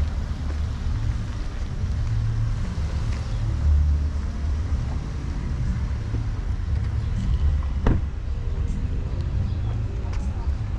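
Low, gusting wind rumble on the camera microphone during an outdoor street walk, with one sharp knock about eight seconds in.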